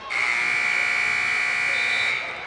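Gymnasium scoreboard buzzer sounding one loud, steady blast of about two seconds, then cutting off.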